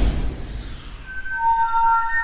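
Chime-like logo jingle music. The tail of a loud whooshing burst fades out in the first half second, then several clear, sustained bell-like tones come in about a second in and hold steady.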